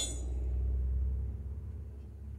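A small cast-iron engine base casting set down on a surface plate with a sharp clink, then pressed and rocked against the plate over a low steady rumble. It does not sit flat yet and wobbles.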